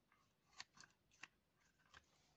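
Near silence, with three faint clicks from the small plastic toy house being handled.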